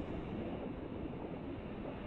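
Low, steady rumbling noise with no clear tones or beat: a documentary's underwater ambience bed.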